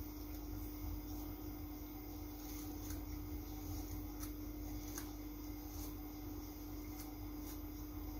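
Faint rubbing and scratching of a comb being drawn through thick natural hair to part it, with scattered soft clicks, over a steady low hum.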